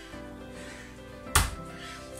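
Soft background music, with a single thud about one and a half seconds in: a piece of raw steak being set down on a wooden cutting board.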